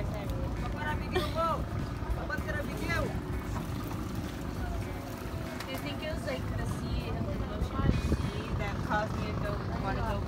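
Outrigger bangka boat engine running steadily, a loud low rumble, with voices calling over it.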